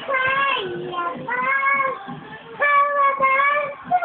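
A young child singing in a high voice: four held notes with short breaks between them.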